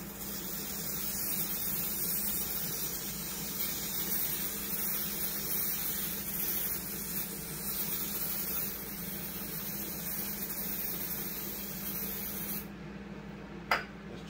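Aerosol spray can hissing in one long unbroken burst as cleaner is sprayed onto a boat carburetor to cut old grime, cutting off suddenly about a second before a single sharp click near the end.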